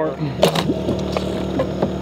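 Steady low hum of the boat's generator, with one sharp knock about half a second in and a few short bits of voice.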